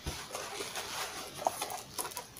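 Rustling and light knocks of a cardboard crochet-kit box and a plastic bag of toy stuffing being handled, with one sharper tick about one and a half seconds in.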